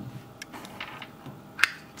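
Plastic housing of an IKEA BADRING water leakage sensor being handled and its unlocked battery cover pulled off: a few faint small clicks, then one sharp plastic click near the end as the cover comes free.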